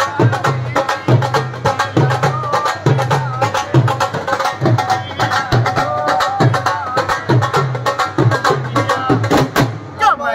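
Several dhol drums played together with sticks in a steady, driving folk rhythm, deep bass strokes and sharp cane hits, with a man singing a Bhojpuri song over the drumming.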